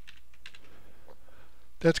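Computer keyboard being typed on: a few light key clicks at uneven spacing in the first half, as a code tag is finished. A man's voice starts near the end.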